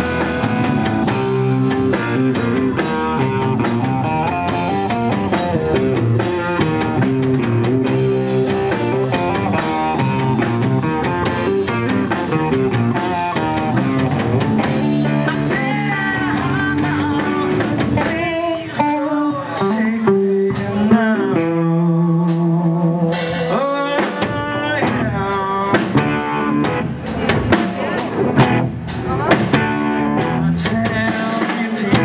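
Live hard-rock band playing a slow blues-rock piece on electric guitar, electric bass and drum kit. About 18 s in the music thins out to a few long held notes, and the full band comes back in around 24 s.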